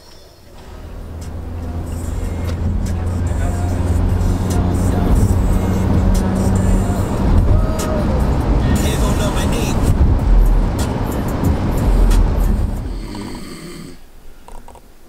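Background music with a heavy bass line, fading in over the first couple of seconds and fading out near the end.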